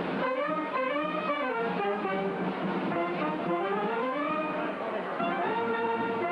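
A processional wind band of saxophones, clarinets and brass playing a melody in unison.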